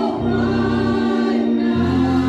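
A small mixed gospel choir singing in a church sanctuary, holding long, steady notes.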